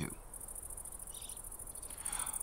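Insects trilling steadily: a continuous, high-pitched, rapidly pulsing chirr.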